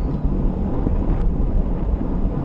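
Wind buffeting the microphone of a bike-mounted GoPro Session at about 25 mph, over low road rumble from the moving bicycle. A single sharp click about a second in.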